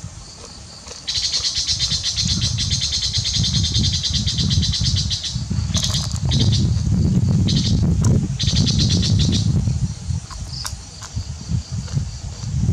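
A high, fast-pulsing trill from a calling animal starts about a second in and comes in several bursts, breaking off near the ten-second mark. Under it runs an uneven low rumble, loudest in the middle.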